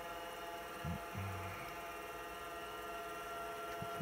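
Apple Lisa 2/10 computer running, giving a steady hum and whine made of several held tones. Two short low sounds come about a second in.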